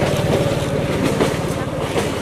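A low engine drone running steadily, with faint voices.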